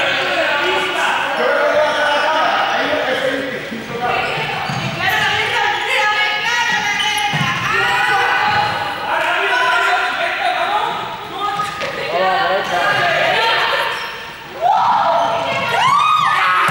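Several young people's voices calling and shouting across a large, echoing sports hall during a ball game, with a ball bouncing on the hall floor now and then.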